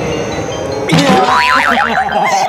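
Edited-in cartoon sound effects: a whoosh with the zoom transition, then, about a second in, a springy boing whose pitch wobbles rapidly up and down.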